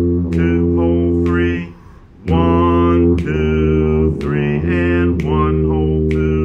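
Tuba playing a slow waltz melody in three-four time: a string of sustained low notes, with a short break about two seconds in.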